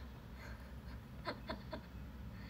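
A young woman's soft, breathy laughter: three short puffs of giggling in the second half, over a low steady room hum.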